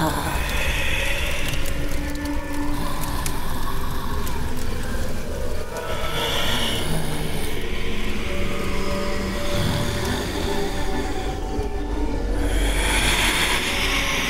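Eerie horror film background score: held tones over a steady low rumble, with a noisy swell building near the end.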